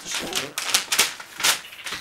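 Sheet of newspaper being handled and pulled apart from the rest of the paper, rustling and crackling in a handful of short, sharp strokes.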